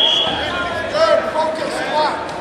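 Several voices calling out across a gym, the people around a wrestling mat. A steady high tone, like a whistle or buzzer, cuts off just after the start.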